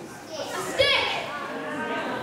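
A child's voice speaking, loudest and highest-pitched just under a second in.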